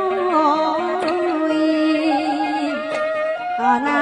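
Khmer traditional wedding music: a woman sings a wavering, ornamented melody into a microphone over a small ensemble of instruments. Sharp strokes sound about a second in and again near three seconds.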